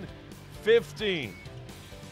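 Background music with guitar under a highlight edit, with a brief voice sound a little under a second in.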